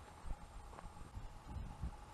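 Faint footsteps on a grass path, dull thuds coming at a steady walking pace.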